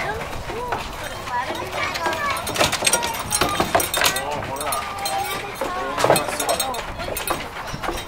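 People's voices talking in the background, with scattered light clicks and knocks.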